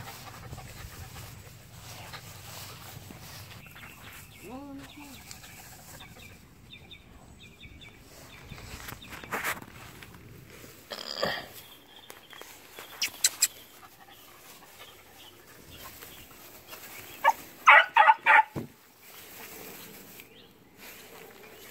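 Mostly low outdoor background with a few scattered faint sounds; near the end a quick run of four or five short, high animal calls, the loudest thing here.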